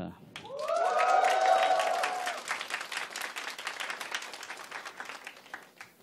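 Live audience applauding and cheering at the end of a song: clapping swells up about half a second in, with whoops and shouts over it for the first couple of seconds, then the clapping slowly dies away.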